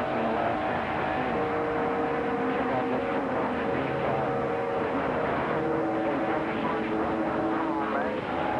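Radio transceiver receiving a weak, fading skip signal: a steady hiss of band static with several long whistling heterodyne tones that shift in pitch, and no clear voice coming through.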